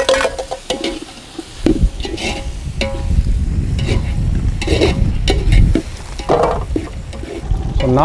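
A long metal ladle stirring and scraping thick chicken masala in a large metal pot, the masala sizzling over the fire, with a low rumble underneath for a few seconds in the middle.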